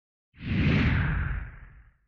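A whoosh sound effect with a low rumble underneath. It starts suddenly about a third of a second in and fades away near the end.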